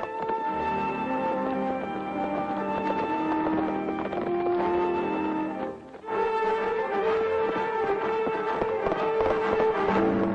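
Orchestral film score playing held melody notes over the hoofbeats of ridden horses. The music dips briefly about six seconds in.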